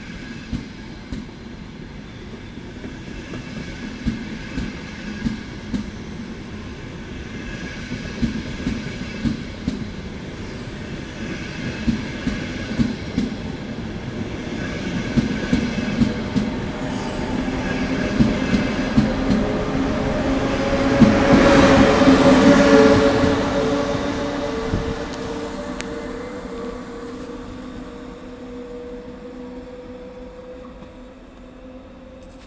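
ETR 500 Frecciarossa high-speed electric train pulling out and gathering speed past the platform: its wheels click over the rail joints in a quickening rhythm. It is loudest about two-thirds of the way through, when a rising electric whine comes in as the rear power car passes. The sound then fades as the train moves away.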